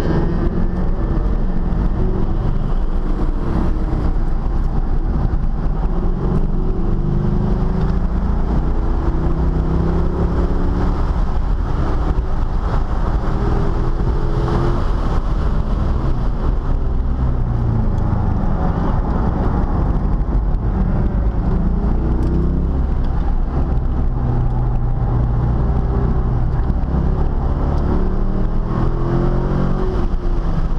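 C5 Corvette's V8 engine heard from inside the cabin under hard track driving, its note rising under acceleration and dropping off again several times.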